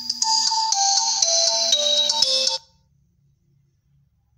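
A mobile phone ringtone playing a melodic tune of steady, stepped notes that cuts off suddenly about two and a half seconds in.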